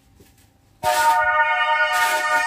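Dance music through a portable Bluetooth speaker cuts out, and after a brief silence a new track starts, just under a second in, with a held chord of several steady synth notes.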